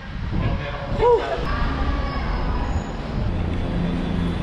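Low steady rumble of a parking garage, with a brief rising-and-falling voice-like call about a second in and faint voices after it.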